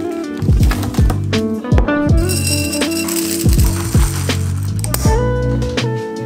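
Background music with a steady beat: a deep electronic kick drum about twice a second under held synth notes.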